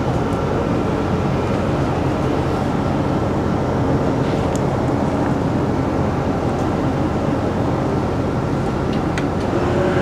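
Electric motors of a motorhome's power window blinds running as the shades roll up: a steady hum with a faint high whine.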